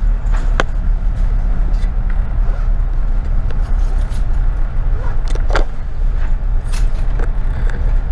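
Running noise of a double-decker bus heard inside its upper deck while driving: a steady low engine and road hum, with a few short sharp clicks or rattles from the bodywork.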